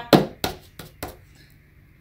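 Fingertips tapping a glued paper cutout down onto a sheet of paper on a tabletop: four quick light taps within the first second, each fainter than the last.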